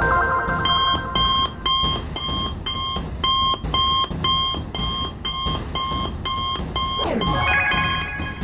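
Electronic ringtone of a cartoon smartwatch call: a two-tone beep repeating about twice a second over background music. It stops near the end with a falling swoop.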